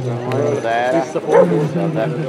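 A voice talking and calling out without pause, with a sharp, loud peak about a second and a half in.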